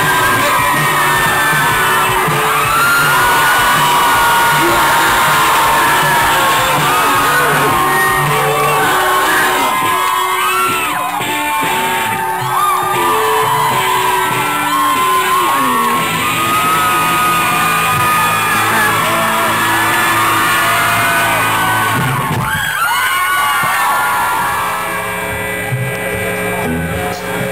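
Live rock band with electric guitar playing loudly through the close of a song, with audience whooping and yelling over the music. There is a brief break about three-quarters of the way through, then the playing continues a little quieter.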